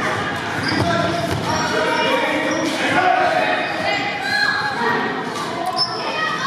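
Basketball bouncing on a hardwood gym court during play, with voices of players and spectators echoing in the large hall.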